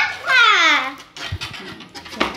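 A child's voice calls out a drawn-out, high 'éé' that slides down in pitch, followed by quieter handling noise and a short low knock.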